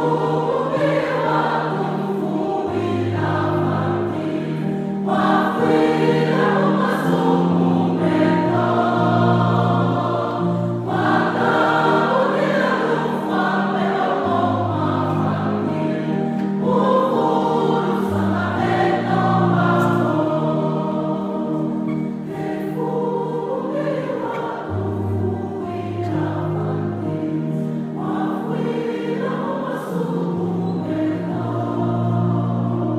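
Choir singing a gospel song, voices in harmony over long held low notes.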